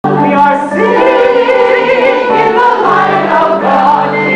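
A congregation singing a hymn together, several voices holding sustained notes.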